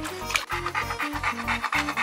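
Pit bull mix dog panting fast and evenly, starting about half a second in, over background music.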